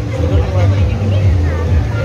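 Indoor crowd ambience: a steady low rumble under faint, distant voices, with a short snatch of speech near the end.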